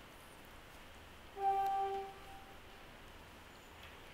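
A single held musical note, with a second note an octave above it, sounds for about a second starting about a second and a half in. The lower note stops first and the upper one fades out; the rest is quiet room tone.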